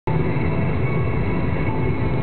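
Steady low rumble of a moving vehicle heard from inside: engine and tyre-on-road noise while driving.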